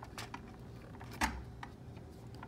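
A few light clicks and one duller knock about a second in from a cup turner's metal rod being worked back onto its drive shaft by hand, with the motor off.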